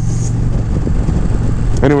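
Indian Challenger's liquid-cooled V-twin running steadily as the motorcycle cruises along at low speed, heard from the rider's seat.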